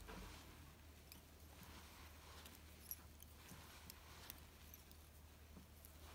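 Near silence with faint rustles and a few small ticks from fingers handling tying thread at a fly-tying vise, the sharpest tick about three seconds in.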